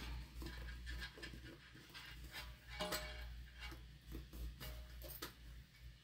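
Quiet handling sounds of a cork-and-cotton bag being worked at the side seams: faint rustles and a few soft clicks as sewing clips go on, over a low steady hum.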